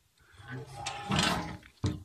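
A man's voice, low and indistinct, for about a second and a half, followed by a sharp click near the end.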